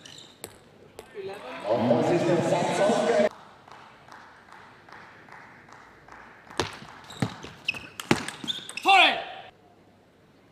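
Table tennis ball clicking off the bats and table in a rally, a few sharp ticks about a second apart. Loud shouting comes twice: a long shout near the start, and a short shout falling in pitch near the end.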